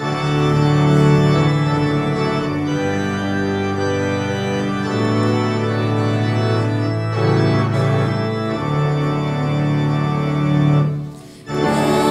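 Church organ playing the introduction to a hymn in long sustained chords over a stepping bass line. It pauses briefly near the end, just before the singing begins.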